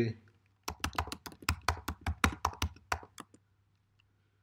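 Typing on a computer keyboard: a quick run of about twenty keystrokes, starting just under a second in and stopping a little after three seconds.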